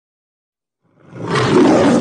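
The Metro-Goldwyn-Mayer logo's lion roar: after about a second of silence a loud lion roar starts and swells quickly.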